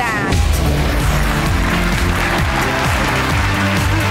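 Game-show background music with a steady bass line, under studio audience applause. A short falling-pitch sound effect opens it.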